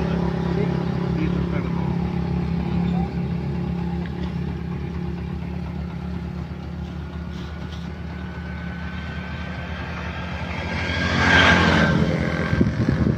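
Road traffic. A steady motor vehicle engine hum fades over the first few seconds. Near the end a vehicle passes close by, swelling loud and then dropping away.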